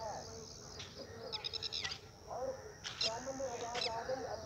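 Countryside ambience: bird chirps, including a quick trill about a second and a half in, over a steady high-pitched buzz, with wavering animal calls underneath.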